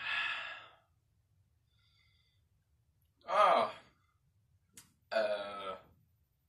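A young man's short wordless vocal sounds: a breathy exhale at the start, then two brief voiced noises, one about halfway that falls in pitch and one near the end.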